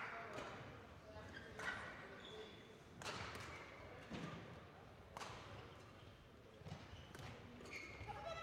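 Faint badminton rally: sharp racket strikes on a shuttlecock a second or so apart, with players' footwork on the court floor.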